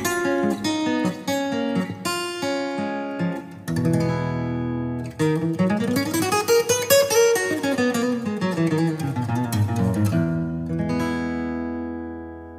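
Acoustic guitar playing alone: picked notes and chords, with a run of notes that climbs and then falls back between about five and ten seconds in, ending on a chord left ringing.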